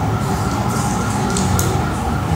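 A steady droning hum with a few faint brief ticks, during a pause with no clear speech.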